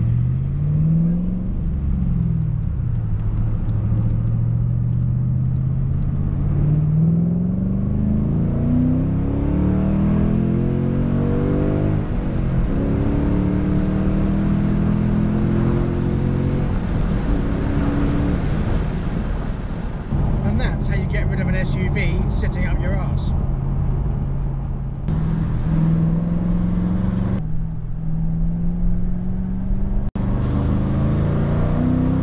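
Ford Mustang engine heard from inside the cabin while driving. Its pitch climbs under acceleration and drops back at gear changes a few times, with steadier cruising in between. About two-thirds of the way through there is a brief higher chattering sound.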